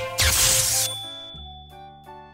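Cartoon sound effect: a short bright shimmering whoosh that ends in a single high ding and fades away. About one and a half seconds in, soft background music with short repeated notes over a low bass begins.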